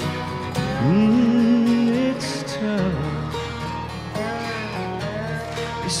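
Country song: a male voice sings a scooped, held note and lets it fall, over guitar and band accompaniment.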